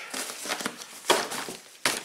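Nylon fabric and webbing of a camouflage tactical backpack rustling and crinkling as hands press and handle it, with a sharp click near the end.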